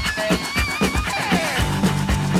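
Rock band recording with an electric guitar playing a lead: a wavering, vibrato-laden high note, then a note sliding down in pitch, over the full band.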